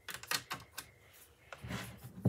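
Light, irregular clicks and taps of craft supplies, including wooden craft sticks, being handled on a work table, with a softer rubbing sound near the end.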